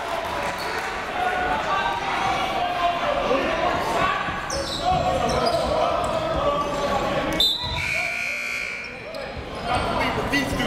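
Voices and shouting echo through a school gym after a charging foul is called, with a basketball bouncing on the hardwood floor. A short, high, steady tone sounds about three-quarters of the way through.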